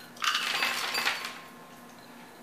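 Chopped pecans poured from a measuring cup into a glass mixing bowl: a clattering, clinking rattle lasting about a second, then stopping.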